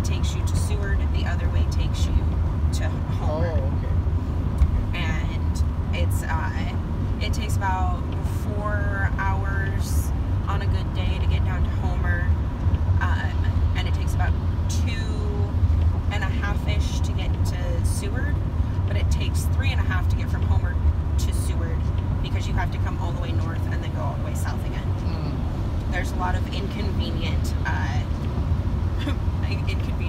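Steady road and engine rumble inside the cab of a Chevrolet van cruising on a wet highway, with faint talking over it.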